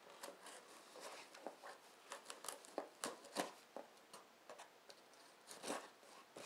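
Scissors cutting through plastic packing tape on a cardboard box: a faint, irregular run of short snips and crackles as the blades work along the seam.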